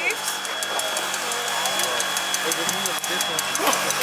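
Electric hoist motor running steadily as it lifts a bobsled off the track, with a low hum and a thin high whine that cuts off shortly before the end.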